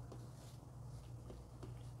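Faint handling of 2 mm rattail cord on a plastic clipboard while a macramé knot is tied: a few soft ticks over a low steady hum.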